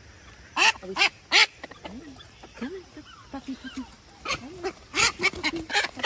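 Ducks quacking: three loud quacks close together about a second in, softer quacks through the middle, and a quick run of loud quacks near the end.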